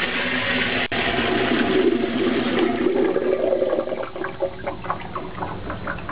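TOTO U307C urinal flushing: water rushes loudly down the bowl and over the drain strainer, then tapers off after about three and a half seconds into dripping and trickling at the drain.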